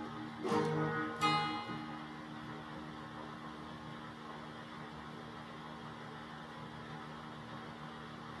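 Electric guitar strummed twice early on, about half a second apart, the chords ringing and fading away within two seconds. After that only a low steady amplifier hum is left.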